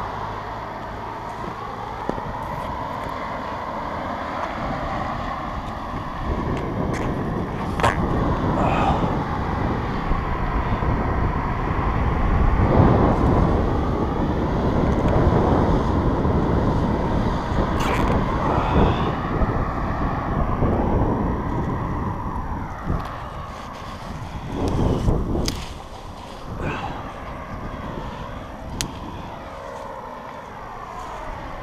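Road traffic passing, a continuous vehicle noise that swells and fades as cars go by, with a few sharp clicks.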